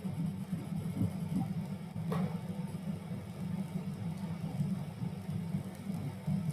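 Steady low background hum picked up by an open microphone on a video call, with a single sharp click about two seconds in.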